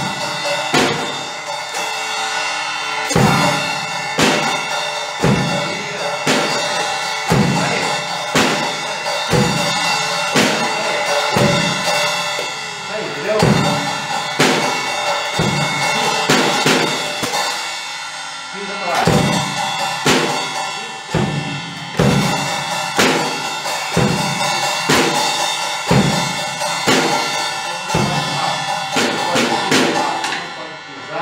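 Acoustic drum kit played in a steady beat: a bass drum stroke about once a second under snare hits and a cymbal that rings throughout. The playing breaks off briefly a little past halfway, then picks up again.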